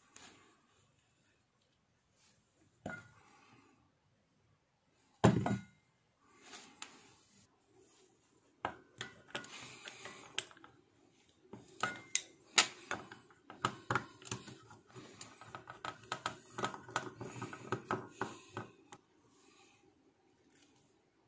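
Hands handling the wires and parts of a homemade inverter on a wooden tabletop: scattered clicks and taps, one loud thump about five seconds in, then a busy run of small clicks and rustling for most of the second half.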